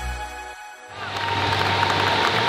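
Electronic background music cuts off and dies away, then about a second in the noise of a large crowd in an arena rises, with a steady tone held above it.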